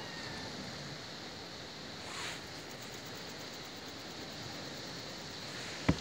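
Mostly steady, low background hiss. A faint, falling kitten meow trails off in the first half second, and a brief soft rustle comes about two seconds in.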